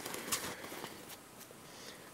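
Faint rustling of sewn fabric pieces being handled, dying down to near quiet in the second half.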